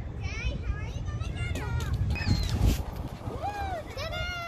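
Children's high-pitched voices calling and squealing in a playground, in short rising and falling cries. A steady low rumble runs underneath, and there is a brief loud low bump a little past halfway.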